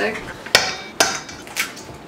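An egg knocked against the rim of a stainless steel mixing bowl to crack it: two sharp knocks about half a second apart, then a fainter one.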